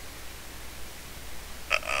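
Quiet room tone of a home recording setup: a faint steady hiss with a low hum, then a man's hesitant "uh" near the end.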